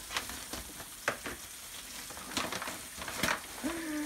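A clear plastic bag and a brown paper bag being handled and pulled open, crinkling and rustling in irregular sharp crackles, the loudest about three seconds in.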